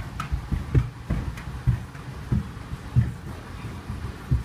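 Footsteps on a jet bridge floor: low, dull thuds at a walking pace, about one every half second or so, with faint ticks of bags and clothing rubbing.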